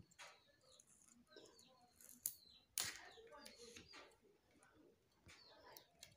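Near silence: faint handling noise with a couple of soft clicks as a rapid HIV test strip is taken out of its foil pack and set down, with faint bird chirps in the background.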